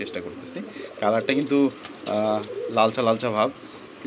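Domestic pigeons cooing in a cage, several cooing phrases one after another.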